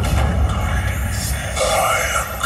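Voices with music underneath, over a deep, steady bass rumble that sets in sharply at the start.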